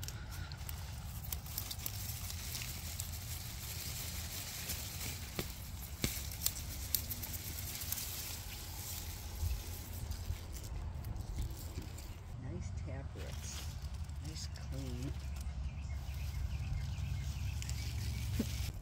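Rustling of leafy plants and loose soil as pulled arugula is shaken free of dirt, over a steady low rumble, with scattered light clicks and a few faint voices in the second half.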